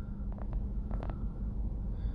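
A steady low engine hum with a few faint clicks.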